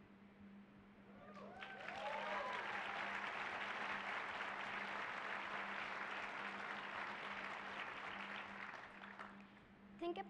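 Audience applauding, with a few whoops at the start. The clapping swells about a second and a half in, holds, and dies away near the end.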